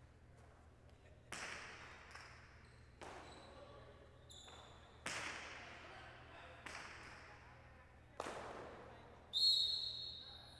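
A jai alai pelota cracking off the court walls and cestas five times during a rally, roughly every one and a half to two seconds, each hit ringing in the large hall. A short high squeak comes near the end and is the loudest sound.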